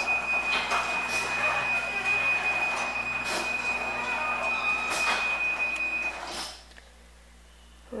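Ceiling-mounted garage door opener running as it closes the door: a steady mechanical run with a continuous high tone over it. It stops about six and a half seconds in as the door reaches the floor.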